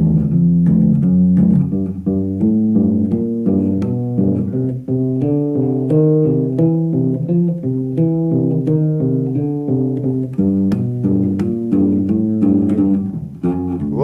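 Electric bass guitar played fingerstyle: a continuous line of single plucked notes, played smoothly with the fretting fingers kept down on the strings, so the notes run together in a legato sound.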